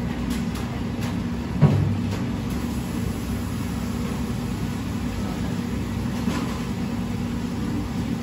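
Steady low hum of commercial kitchen machinery, with one sharp thump about one and a half seconds in and a few faint clicks.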